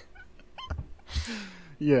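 Soft laughter from men on a voice call, with a faint short high squeak in the first second and a breath, then a man starts to speak near the end.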